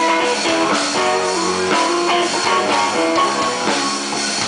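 Live blues-rock band playing: electric bass and drum kit, with other pitched instruments over them, the notes changing throughout.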